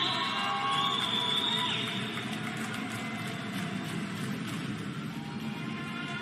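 Music playing, with held high notes for about the first two seconds, then settling into a softer, steady backing.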